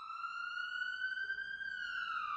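A siren wailing: one slow rise in pitch that peaks about a second and a half in, then starts to fall.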